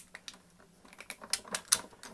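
Hand-cranked Sizzix BIGkick die cutting machine feeding an embossing sandwich with a thin aluminum can sheet through its rollers: a run of irregular light clicks, sparse at first and denser and louder in the second half.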